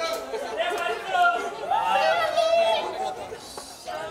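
A close crowd of people talking and calling out over one another: chatter, with no single voice standing out.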